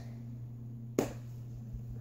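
A single sharp slap about a second in, as a lump of soft homemade lotion dough is brought down and slapped between the hands, over a steady low hum.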